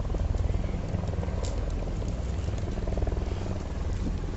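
Black Hawk helicopter running: a steady low rumble of rotor and turbine with a fast, even pulsing.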